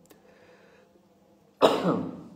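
A man coughing once, suddenly and loudly, near the end after a short quiet pause.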